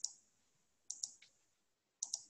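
Computer mouse clicks, faint: one click at the start, then two quick clicks about a second in, with near silence between.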